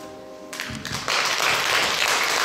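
The last chord of the song fades on the piano. About half a second in, audience applause breaks out and swells to full strength within a second.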